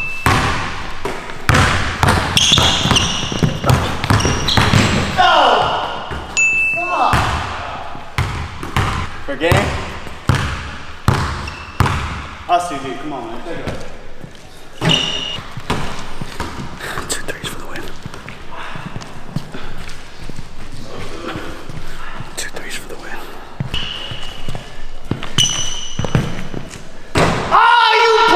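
A basketball bouncing and being shot on a hardwood gym floor during a one-on-one game, the hits echoing in the large hall. Short high sneaker squeaks come now and then, and voices call out, loudest near the end.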